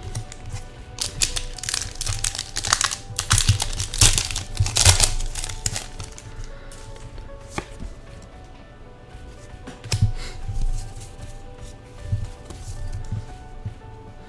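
Foil booster-pack wrapper crinkling and tearing open, densest in the first few seconds, followed by lighter handling of the trading cards, with soft background music underneath.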